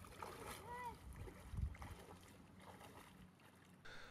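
Faint water sounds of legs wading through a shallow stream, soft sloshing with a few small splashes. About a second in there is one short, faint rising-and-falling call.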